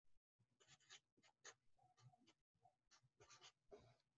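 Faint scratching of a felt-tip marker writing on a sheet of paper: several short strokes with small gaps between them.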